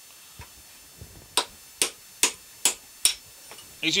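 Five sharp metallic hammer blows on a steel drift, evenly spaced at about two and a half a second after two lighter taps, driving the worn lower steering-head bearing cup out of a motorcycle headstock.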